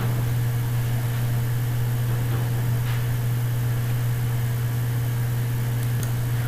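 A steady low hum with a faint hiss behind it, unchanging throughout: background noise of the recording setup.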